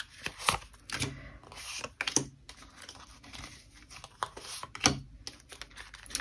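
A deck of tarot cards being shuffled and handled: irregular clicks and short rustles.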